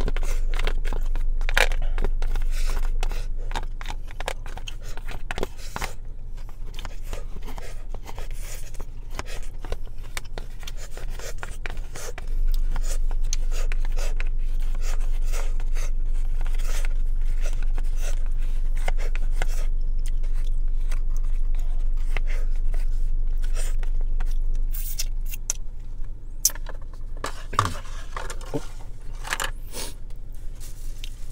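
Wooden chopsticks scraping and clicking against a plastic bento tray as the last of the food is picked up, in many short irregular strokes over a steady low hum.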